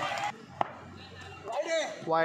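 A single sharp knock about half a second in, then a brief high shout across the open ground, over quiet crowd background.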